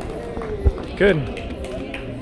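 A woman's voice says "good" over the steady murmur of a gym hall, with a single dull thump just before the word.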